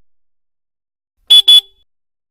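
Motorcycle horn giving two quick honks back to back, about a second and a quarter in, on an otherwise silent track.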